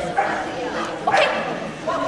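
A dog barking, with two sharp barks about a second apart.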